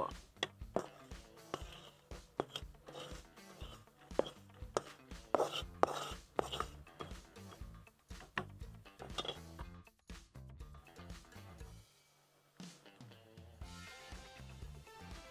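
Soft background music under irregular knocks and scrapes of cooking utensils: a wooden spatula scraping against an aluminium pan and a metal spoon stirring in a clay pot.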